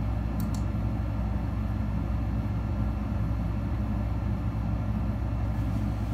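Steady low hum and rumble of background noise, unchanging throughout, with a faint tick about half a second in.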